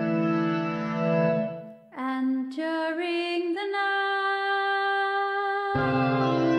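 Electronic keyboard music from a MIDI controller: sustained chords that stop about two seconds in, leaving a single note that slides up in pitch and then holds, before the chords come back near the end.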